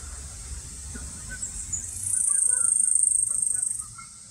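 A high, thin buzzing trill from an insect, starting about two seconds in and lasting nearly two seconds, steady in pitch with a fast pulsing beat.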